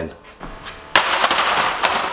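A sudden crash about a second in, followed by a short run of hard plastic clatters lasting under a second: an old Dyson upright vacuum cleaner being thrown down onto the floor.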